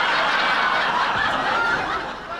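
A large audience laughing together in response to a comedian's punchline, loud at first and dying down near the end.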